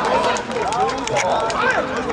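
Several people shouting and calling out over one another, with scattered sharp clicks among the voices.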